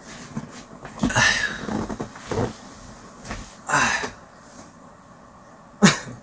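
A man's breathy exhales while he leans far back in a chair, ending in a short vocal grunt that falls in pitch.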